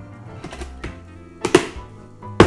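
Hard plastic knocks and clunks as a Petlibro automatic pet feeder's food tank is set onto its base and pressed into place, the loudest about one and a half seconds in. Background music plays underneath.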